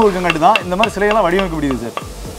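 A man talking, with a few light, sharp taps of a wooden mallet on a carving chisel.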